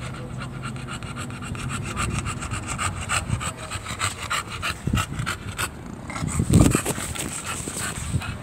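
English bulldog panting rapidly and rhythmically, close up. A loud thump about two-thirds of the way through.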